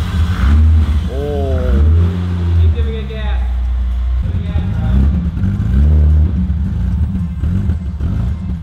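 BMW E30's straight-six engine firing on starter fluid sprayed into its intake, running roughly and revving up and down in surges. The engine gets no fuel through its own lines, so it only runs while the fluid lasts.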